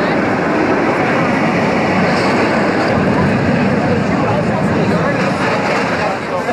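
Dense crowd chatter: many people talking at once, blending into a steady murmur with no single voice standing out.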